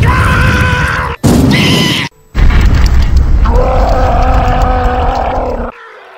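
A cartoon villain's loud, drawn-out screams of rage over a heavy rumble, in three held bursts; the last and longest starts about two and a half seconds in and cuts off shortly before the end.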